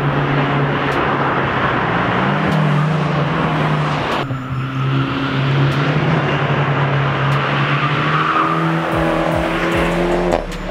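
Small turbocharged four-cylinder hot hatchbacks, a Fiat 500 Abarth and a Ford Fiesta ST, driving a winding road with a steady engine note over road and wind noise. The sound changes abruptly about four seconds in, and the engine note rises near the end.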